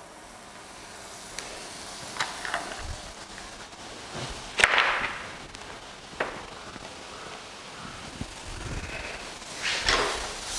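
A few light taps of a fork on a metal pan. About halfway through, a sharp tap is followed by a brief, fading sizzle as Blue Band margarine drops into the preheated, dry pan.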